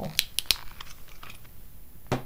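A folding multi-tool being handled: three or four sharp clicks in the first half second, then a few faint ticks.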